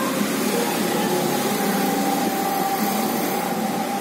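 Steady rain falling, an even hiss, with a faint steady whine joining about half a second in.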